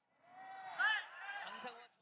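Broadcast match commentator's voice, words not made out, ending abruptly at an edit.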